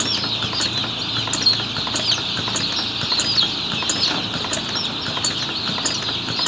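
Dense, continuous chorus of hundreds of day-old broiler chicks peeping, many high overlapping cheeps.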